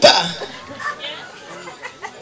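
A small rock band (electric guitar, bass guitar and drum kit) stops on a loud accented hit at the start that dies away within about half a second. A short break in the song follows, with only low voices and small stray sounds until the band comes back in.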